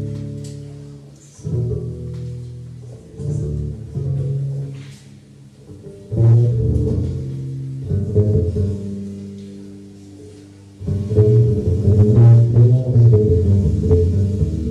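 Jazz band playing the slow opening of a tune: low piano and double bass notes struck and left to ring away, a new one every second or two. It grows fuller and louder near the end.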